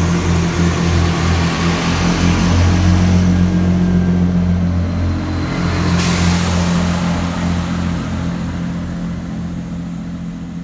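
Diesel multiple unit pulling out of the platform, its engines running under power with a steady low drone. A rushing hiss comes in about six seconds in, and the sound fades as the train draws away.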